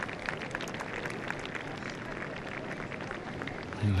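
Outdoor ambience beside a golf green: an even wash of wind and spectator noise with scattered faint clicks and ticks.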